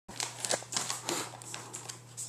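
Glittery gift-wrapping paper crinkling and tearing in quick, irregular crackles as a package is unwrapped by hand.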